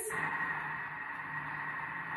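Thermomix motor running steadily as it starts blending cooked cauliflower and milk into a sauce, turned up to speed six, with a steady whirring whine.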